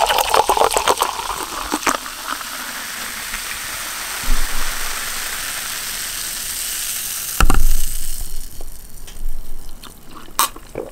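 A red fizzy drink is poured into a glass, the gurgling pour ending about two seconds in; the bubbles then fizz with a steady hiss. A loud knock comes about seven seconds in, and the fizzing is much fainter after it.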